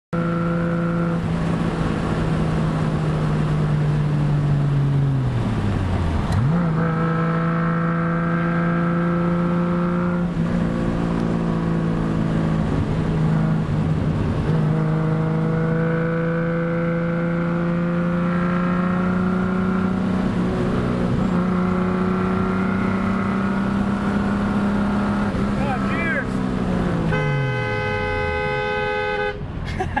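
Triumph GT6+ straight-six engine heard from inside the cabin, cruising at steady revs. The revs dip and come back about six seconds in, then fall away near the end as the car slows. The car horn then sounds for about two seconds.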